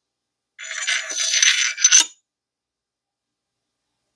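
The ATI Bulldog 12-gauge shotgun's stainless steel gas piston being slid onto its metal tube: a metal-on-metal scraping rattle with a faint ring, lasting about a second and a half and ending in a sharp tap about two seconds in.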